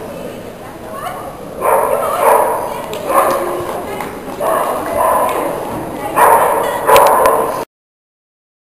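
A Chinese crested powder puff barking in short repeated bursts, about eight in all, then the sound cuts off suddenly near the end.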